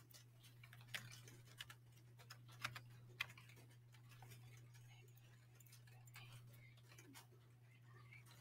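Near silence: faint room tone with a steady low hum and a few scattered faint clicks, most of them in the first half.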